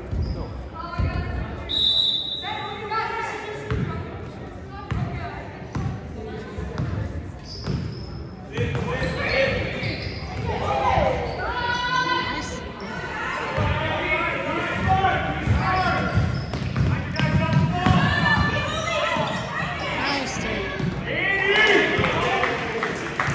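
A basketball bouncing on a hardwood gym floor as players dribble up the court, with players' and spectators' voices echoing in a large gym; the voices grow louder about a third of the way in.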